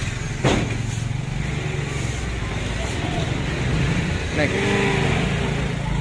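A vehicle engine idling steadily as a low hum, with one sharp knock about half a second in.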